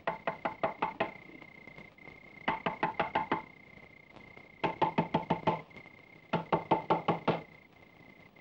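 Rapid knocking on a wooden door, with knuckles or a fist, in four bursts of about seven quick knocks each, spaced a second or so apart. A faint steady high tone runs underneath.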